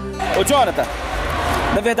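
Background music cuts off just after the start, giving way to shouting voices and crowd noise echoing in a futsal gym.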